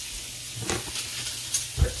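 Chopped onions sizzling in butter in a cast-iron skillet: a steady frying hiss, with a few light clicks in the second half.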